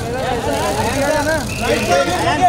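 A crowd of press photographers calling out over one another, several voices overlapping, with a steady low rumble beneath.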